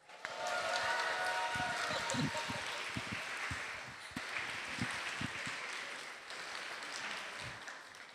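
Audience applauding with some cheering, starting suddenly and dying away over several seconds.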